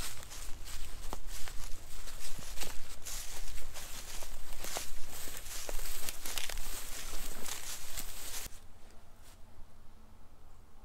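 Footsteps walking through dry grass and leaf litter, irregular steps with brushing of vegetation; the sound drops away about eight and a half seconds in.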